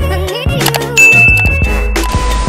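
Upbeat intro music with a steady beat; about a second in, a bright ding sound effect, a notification-bell chime, rings out over it and holds for about a second.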